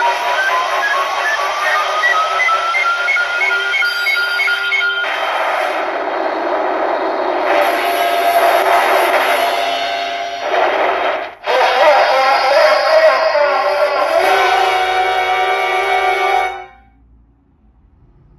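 A Kyoraku CR Pachinko Ultraman M78TF7 pachinko machine plays its reach music and effects. A tone climbs in steps for the first few seconds, then a loud, dense stretch with a brief break comes about eleven seconds in. The sound cuts off about a second and a half before the end, as the reels settle on a miss (3-4-3).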